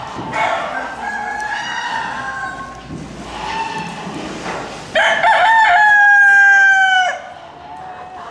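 Rooster crowing twice. A first crow comes near the start; about five seconds in comes a much louder crow of about two seconds, held level before it drops off.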